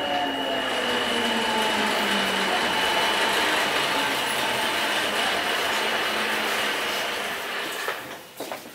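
Rubber-tyred Namboku Line 5000-series subway car slowing into a station, heard inside the car. The traction motors' whine falls in pitch and fades within the first few seconds, under a steady rolling noise that dies away near the end as the train comes to a stop.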